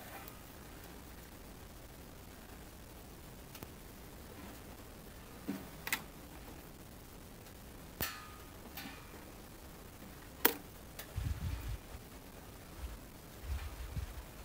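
Faint handling sounds: hands wrapping a thin wire around a spark plug lead, with a few scattered small clicks, the sharpest about ten seconds in, and some low bumps near the end.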